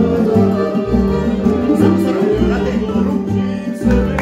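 A live string band playing: a violin carries the tune over strummed guitars and a steady beat in the bass.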